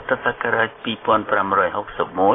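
Speech only: a news reader talking in thin, narrow-band radio-quality sound.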